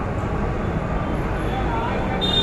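Steady, low rumbling roar of a street-stall gas burner firing under an iron wok.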